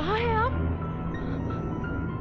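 A cat meows once, a short call of about half a second right at the start, over tense background music with a low drone and sustained high notes.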